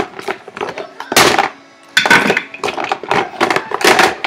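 Hard plastic parts of a Tommee Tippee electric steam sterilizer knocking and clattering as they are handled and fitted together, with the two loudest knocks about one and two seconds in.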